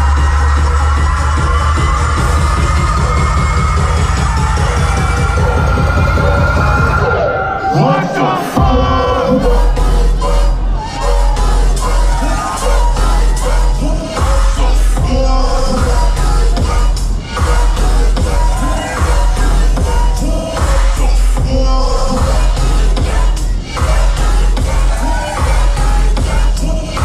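Loud live dubstep DJ set through a club sound system: a build-up with rising synth tones over sustained deep bass breaks off about seven or eight seconds in, then drops into a choppy, stuttering section over heavy bass.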